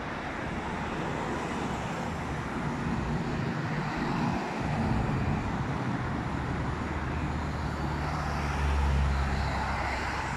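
Road traffic on a multi-lane road: cars and a city bus passing with steady tyre and engine noise. A heavy vehicle's low engine hum swells from about seven seconds in and is loudest near the end.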